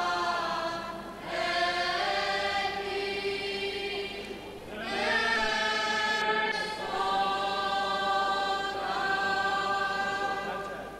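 Choir singing a slow Byzantine-rite chant, voices holding long notes that move in steps. The singing dips for a breath about a second in and again around four and a half seconds, then continues.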